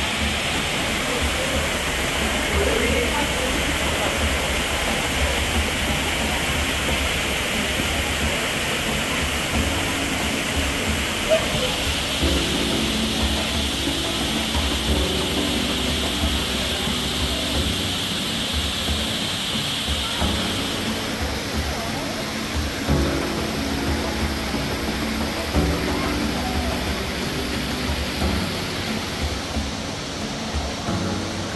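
Waterfall in a rainforest exhibit, a steady rush of falling water, with background music of held notes coming in about a third of the way through. The water's hiss lessens about two-thirds of the way in.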